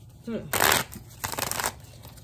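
A tarot deck being shuffled by hand: two short shuffles, each about half a second long, the second starting about a second in.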